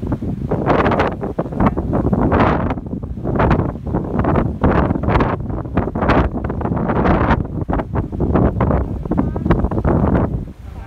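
Wind buffeting the phone's microphone in uneven gusts, loud and rising and falling every second or so.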